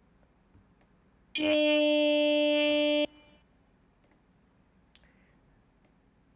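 A single held note played back from the music software, perfectly steady in pitch with a bright tone. It starts about a second in, lasts about a second and a half and cuts off abruptly. Faint clicks are heard around it.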